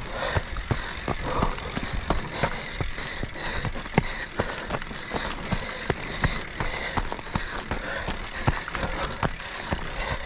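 Mountain bike ridden fast down a rocky dirt trail: tyres running over loose gravel and dirt, with rapid knocks and rattles from the bike over the bumps, several a second.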